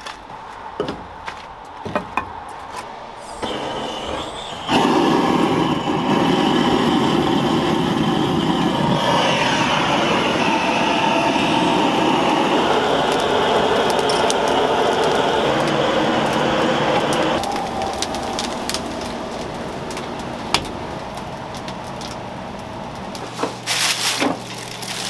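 A few wooden knocks and clicks from oak firewood logs being set in place. Then, about five seconds in, gas blowtorches fire into the woodpile to light it with a loud, steady rushing that drops to a lower level about two-thirds of the way through.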